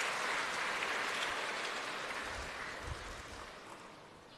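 Congregation applauding, the clapping fading gradually and almost dying out near the end.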